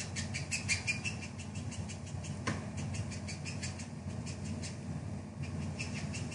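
Felt-tip alcohol-marker colour lifter dabbed again and again on cardstock, making a rapid run of light ticking scratches that pauses in the middle and picks up again near the end. A steady low hum sits beneath.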